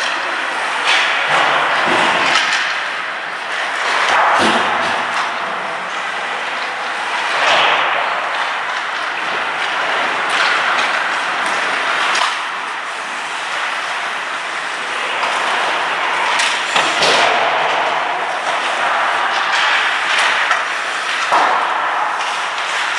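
Ice hockey play: skate blades scraping and carving the ice, with repeated knocks of sticks on the puck and occasional thuds against the boards.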